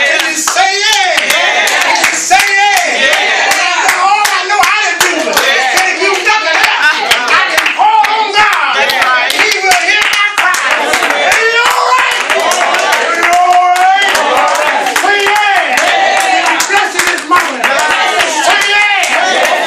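Church congregation clapping their hands steadily, with many raised voices over the claps throughout.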